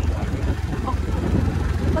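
Steady low wind rumble on the microphone of a moving motorbike, mixed with its engine and road noise.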